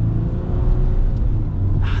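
2023 Ram 1500's 3.0-litre EcoDiesel V6 turbodiesel pulling under acceleration, heard from inside the cab as a steady low drone.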